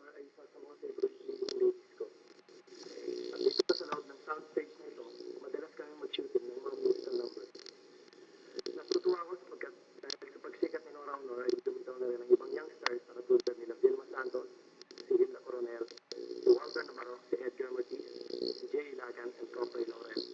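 Speech from an old film soundtrack, thin and muffled, with scattered crackles and clicks.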